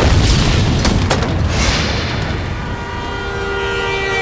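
Film explosion effect: a loud boom with a long low rumble, then a second blast about a second and a half in.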